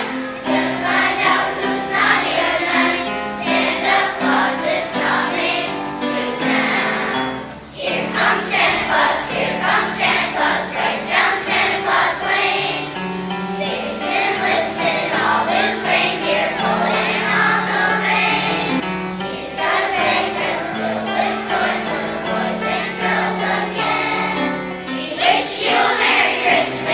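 Elementary school children's choir singing a Christmas song in unison, with one brief break between phrases about eight seconds in.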